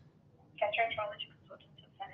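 A person's voice coming through a phone's speaker, thin and quiet, starting about half a second in: the call is picked up at the other end.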